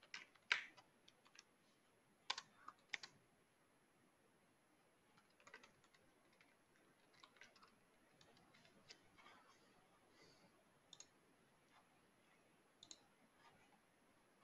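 Faint computer keyboard typing: scattered, irregular keystrokes, a few louder clicks in the first three seconds, as text is entered into a form field.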